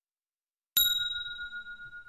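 A single struck bell rings out suddenly about three-quarters of a second in, after silence, with a clear high tone that fades slowly and is still ringing at the end.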